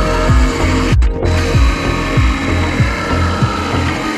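DeWalt cordless jigsaw cutting a laminated hardwood longboard blank, with a brief break about a second in, mixed under electronic music with a steady kick drum.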